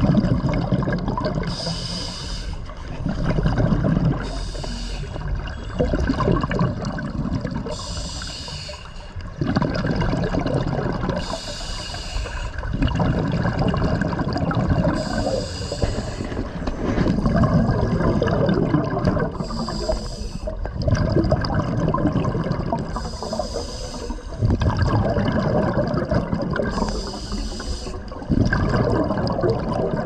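Scuba regulator breathing heard underwater: a short hiss of inhalation followed by a longer rush of exhaled bubbles, repeating regularly about every three to four seconds.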